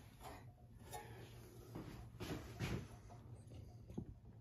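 Faint scrapes and light knocks of a hand working at a small engine's flywheel, trying to turn it by hand, over a low steady hum.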